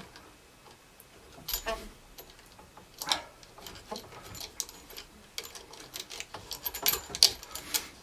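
Irregular small metallic clicks and ticks as a nut is turned by hand up a threaded rod against the underside of a wooden router jig. The clicks come sparsely at first and more closely together near the end.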